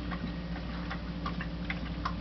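A steady low hum with many faint, irregular small clicks and ticks scattered over it.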